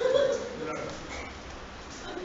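Short wordless voice sounds from people in a room, loudest in a brief burst right at the start, then quieter.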